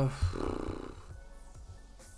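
Quiet background music under a pause in a man's talk: his drawn-out "uh" trails off at the start, followed by a short breathy exhale, then only the music.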